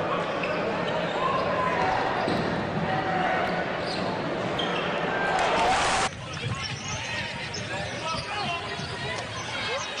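Basketball game sound in an arena: crowd noise with indistinct voices and court sounds. The crowd noise swells to a peak about six seconds in, then cuts off abruptly to quieter game sound.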